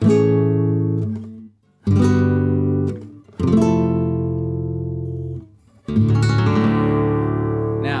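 Nylon-string flamenco guitar in Rondeña tuning (D A D F♯ B E): four full barre chords struck with the thumb, each left to ring and fade before the next.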